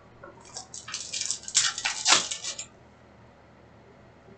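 Foil trading-card pack wrapper crinkling and tearing as the pack is ripped open by hand, a burst of crackling lasting about two seconds and loudest near the middle.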